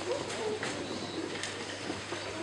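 Audience murmuring and chattering quietly in the hall, with a few soft knocks.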